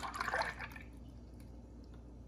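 Creamy chocolate-milk mixture pouring down a spout into a plastic ice-pop mould: a short splashing pour in the first second, then a few faint drips.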